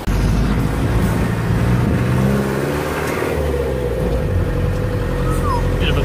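Vehicle engine running while driving, with steady road noise; the engine note rises and falls briefly about two to three seconds in.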